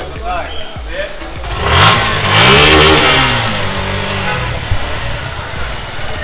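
A vehicle engine revving up and back down about two seconds in, loud, with a rush of noise, then running more evenly.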